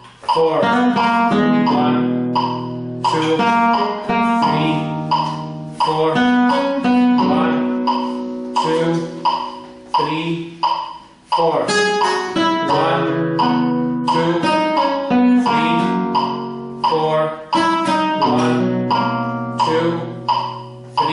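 Flamenco guitar playing the bridge of a rumba, arpeggiated chords and single notes ringing. A metronome clicks steadily under it at 87 beats a minute.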